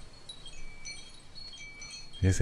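Faint chiming: a few scattered, short high bell-like notes at different pitches over a quiet hiss.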